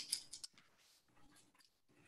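Mostly near silence, with a few faint clicks in the first half second from a wire and steel binder clips being handled.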